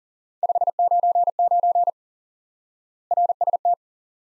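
Morse code sent at 40 words per minute as a single steady beep keyed into short and long pulses. A longer group spells 599, and after a pause of about a second a short group spells RST.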